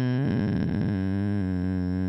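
Sustained synthesizer chord that steps down to a lower chord about a quarter second in and holds steady, ending abruptly.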